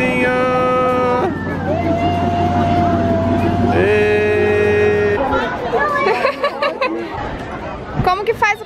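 A trackless novelty train passing with a steady low motor hum. Long held tones sound over it until the hum stops about five seconds in.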